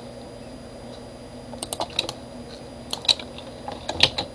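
Computer keyboard keys clicking: a few short presses in small clusters, about one and a half, three and near four seconds in, over a faint steady hiss.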